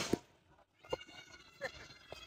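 Faint, brief voices of people some way off, twice, over quiet open-air background, just after close speech stops.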